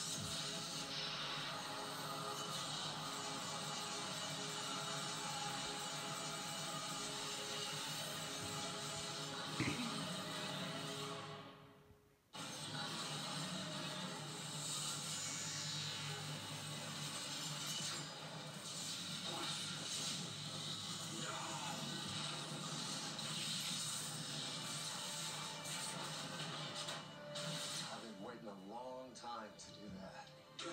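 Television soundtrack playing music with action sound effects mixed in. There is a sharp crack a little before the sound fades out and drops away briefly midway, then resumes.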